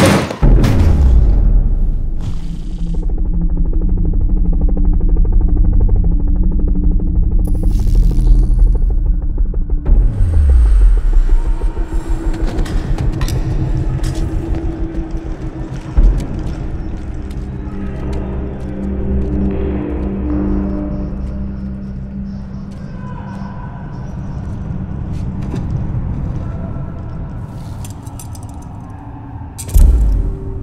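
Film score music with sustained low notes and a rumble underneath, punctuated by sudden heavy hits near the start, about halfway through, and at the end, with a low falling sweep about ten seconds in.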